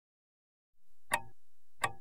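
Silence, then two sharp clock-like ticks a little under a second apart, the ticking that opens the next song's recording.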